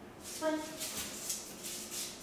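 A single spoken cue, "one", then light scuffing and ticking of shoes and a dog's claws on a concrete floor as dog and handler shift position.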